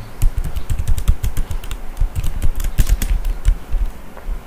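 Fast typing on a computer keyboard: a quick run of key clicks, each with a low thump, thinning out near the end.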